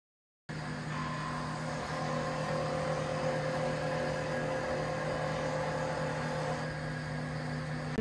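A steady hum with several held tones, cutting in abruptly about half a second in after dead silence.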